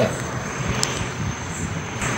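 Steady background hiss and rumble with no clear source, with a faint click a little under a second in.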